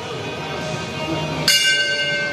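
A boxing-ring bell struck once, about one and a half seconds in, then ringing on with a steady high tone. It is the bell that starts the next round of a Muay Thai fight.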